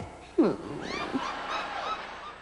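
A voice giving a short, falling "hmm", followed by a few faint, high squeaks that rise and fall.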